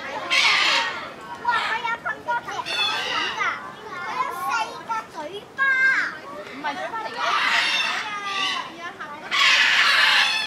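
A crowd of young children chattering and calling out over one another, with louder bursts of shouting at the start, about seven seconds in and near the end.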